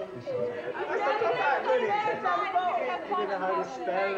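Several people talking over one another around a table: indistinct, overlapping conversation with no single voice clear.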